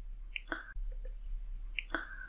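A few soft, scattered clicks over a low steady electrical hum.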